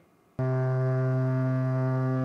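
Ship's horn of the fisheries surveillance vessel KN-390, starting suddenly about half a second in and holding one steady low note: a farewell blast on leaving port.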